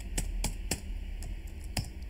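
Computer keyboard keys being typed, four separate keystroke clicks spaced unevenly.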